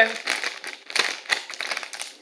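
Plastic Monster Munch snack bag crinkling in the hands, a run of irregular crackles.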